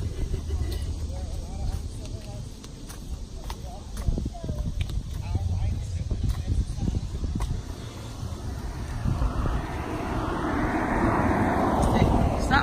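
Wind rumbling on the phone's microphone, with scattered light knocks. In the last few seconds a vehicle's tyre noise swells up as it passes on the bridge road.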